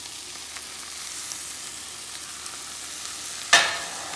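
Drumstick leaves sizzling steadily in a hot frying pan, with a sudden loud clatter of a metal spatula against the pan near the end.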